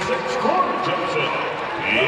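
Basketball arena crowd noise under indistinct voices, swelling slightly near the end as a free throw goes in.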